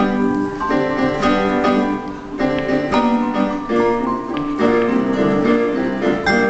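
Live duo of vibraphone and digital piano playing an instrumental pop tune: sustained piano chords under a melody of ringing mallet-struck vibraphone bars, with notes struck every fraction of a second.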